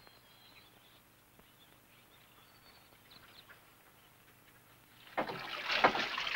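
Near quiet with a few faint bird chirps for most of the stretch. About five seconds in, water starts running at a kitchen sink.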